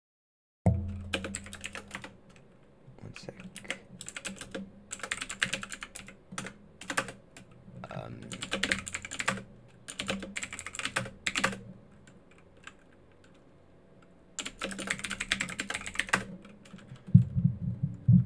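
Typing on a computer keyboard: runs of quick keystroke clicks with short pauses between them as short terminal commands are entered, starting about half a second in and easing off for a couple of seconds past the middle.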